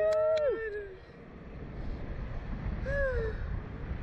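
A rider's voice calls out in a falling "oh" that trails off within the first second, with a sharp hand slap at the start as the riders high-five. After that, wind rumbling on the microphone, with one short vocal sound about three seconds in.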